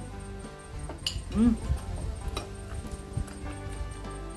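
Background music with steady held tones, with a few light clicks of spoons against ceramic bowls.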